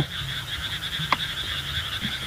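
Night chorus of frogs croaking, with a steady high-pitched insect trill over it and a single brief click about a second in.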